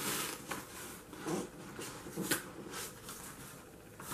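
A cardboard box being opened by hand: a quiet series of short rustles and scrapes as the cardboard lid slides and rubs free of the box.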